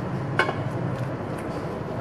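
Wooden spoon stirring coconut milk in a stainless steel pot, with one sharp tap of the spoon against the pot about half a second in and a few fainter ticks, over a steady hiss.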